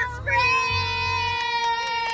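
Women singing one long, high held note along with pop music that has a bass beat underneath.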